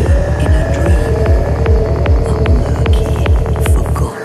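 Dark psytrance track: a steady kick drum and throbbing bass at about two and a half beats a second under a slowly rising synth tone, with ticking percussion that speeds up into a roll near the end. The kick drops out right at the end.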